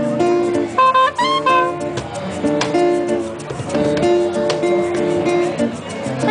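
Live acoustic trio music: an acoustic guitar picks a run of notes over held saxophone tones, with light hand percussion.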